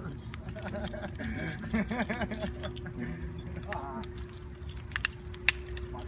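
People's voices with no clear words, over a steady hum, with scattered light clicking and rattling and two sharp clicks near the end.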